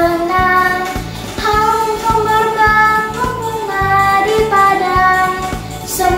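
A girl singing a children's Sunday school hymn in Indonesian over a backing track with a steady beat of about two pulses a second.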